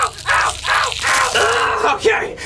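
A man's voice screaming in pain in a rapid series of short, harsh cries, a few a second, ending in one longer cry.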